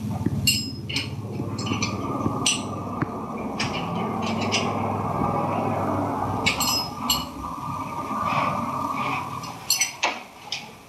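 Metal buckles of a full-body safety harness clicking and clinking repeatedly as the leg straps are fastened and adjusted, over a steady background hum.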